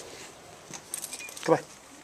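A dog's metal chain collar and leash clip jingling as the dog moves, a quick run of light clinks about a second in.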